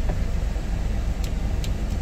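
Hyundai Mighty II truck's turbo-diesel engine idling steadily, heard from inside the cab, with a few light clicks in the second half.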